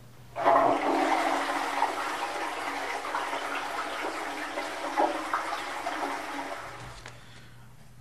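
A toilet flushing: a sudden rush of water starts about a third of a second in, then slowly fades away over some seven seconds.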